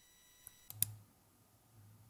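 A few short clicks of a computer mouse in quick succession under a second in, over a low steady hum.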